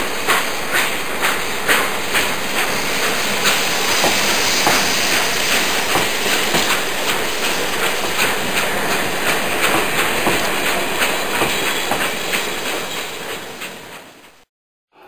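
Train running: wheels clicking over rail joints a couple of times a second over a steady hiss, fading out near the end.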